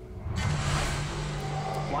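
Cartoon action soundtrack: a rushing noise effect that rises about a third of a second in, over a steady low tone and background music.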